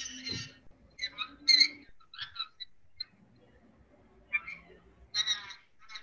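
Faint, thin-sounding voices in short scattered bursts, as heard over a video call, over a low hum.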